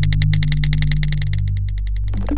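Electronic intro sting: a fast, even ticking of about ten clicks a second over a steady low synthesizer drone.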